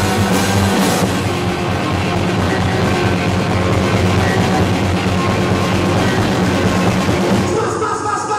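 A rock band playing live: electric guitar and drum kit, with a singer's voice. The cymbals and upper sound drop out briefly near the end, as in a break in the song.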